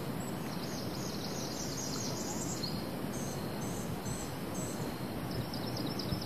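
Outdoor river ambience: a steady even noise, with a run of short, high-pitched chirps from wildlife, four of them clustered about three to five seconds in.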